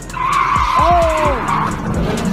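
Car doing a burnout: tyres screeching as they spin on the road, with the engine revving up and falling back about a second in.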